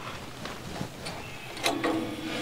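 Faint clicks and light scraping of a dial-indicator set checker being slid along a steel band-saw blade and seated against a tooth, with a couple of sharper metal taps in the second half.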